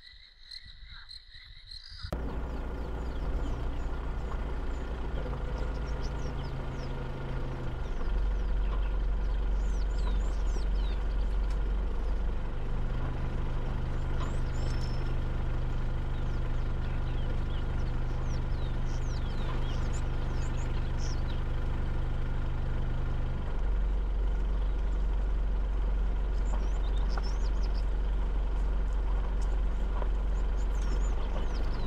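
Vehicle engine running steadily while driving along a dirt road, its low drone shifting a few times as the engine load or speed changes. Faint bird chirps sound over it.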